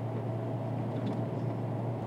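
Steady engine and road noise heard inside a vehicle's cabin while cruising at highway speed, with a constant low hum.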